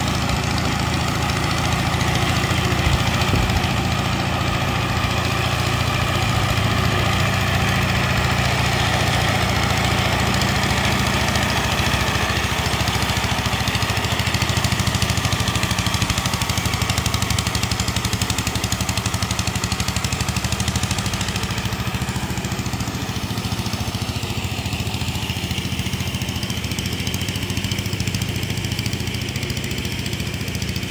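Engine of a small ride-on double-drum road roller running steadily as it travels over gravel, a little quieter in the last third.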